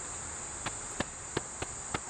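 Steady high-pitched chorus of insects, typical of crickets, droning without a break. About five sharp clicks sound irregularly in the second half.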